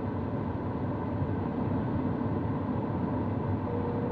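Steady rush of air inside a sailplane's cockpit in gliding flight. Near the end a variometer starts a steady tone.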